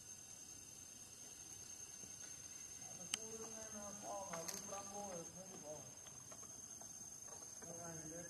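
Steady high-pitched drone of insects, with a person's voice talking faintly from about three seconds in and two sharp clicks around the same time.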